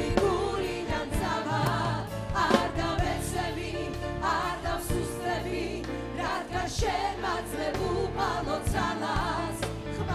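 Church worship choir singing, with lead singers amplified through handheld microphones over instrumental backing.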